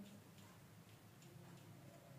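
Near silence: faint room tone with a few very faint ticks.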